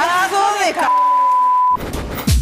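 A woman's shouted speech cut off by a steady, high, single-pitch bleep lasting almost a second, the kind of censor bleep laid over a word on TV. Music starts just before the end.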